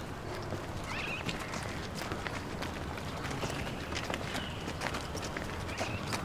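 Footsteps of several people walking on a paved path: a steady run of light, hard-soled steps.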